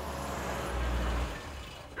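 Car engine rumbling as a car pulls up. The low rumble and hiss swell, then fade out about a second and a half in.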